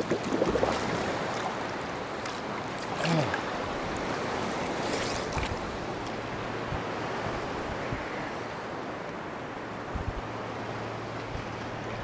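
Seawater sloshing and lapping around a camera held at the surface by a swimmer, with splashes near the start and again about three and five seconds in.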